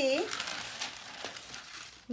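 Butter paper (parchment) rustling and crinkling as it is peeled back off a sheet of rolled puff pastry dough, fading out toward the end.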